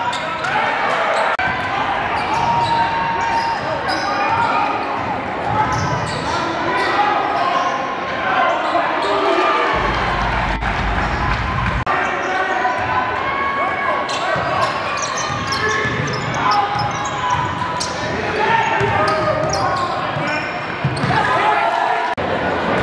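A basketball bouncing on a hardwood gym floor during live play, with indistinct voices of players and spectators echoing around the gym.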